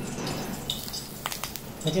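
Hot oil sizzling faintly as it hits a pakora mix of shredded chicken, onions and besan and rice flour, with a couple of light clicks a little past the middle.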